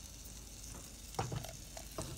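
Melted butter and brown sugar sizzling steadily in a saucepan on the stove, with a short knock about a second in.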